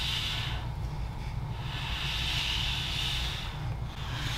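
Room tone: a low steady hum with a soft hiss that fades in and out twice.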